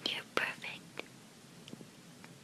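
A person whispering a few short words, with a small click about a second in.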